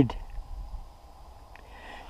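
Mostly quiet background with a faint low rumble, just after a spoken word ends.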